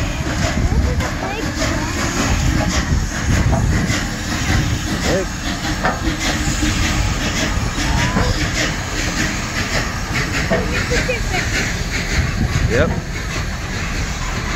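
Union Pacific 4014 Big Boy articulated steam locomotive rolling past close by: a steady, heavy rumble of its wheels and running gear with hissing steam.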